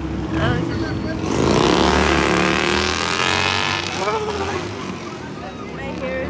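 A motor running, its pitch rising for about half a second and then holding for some two seconds more, the loudest sound in this stretch, with brief voices before and after.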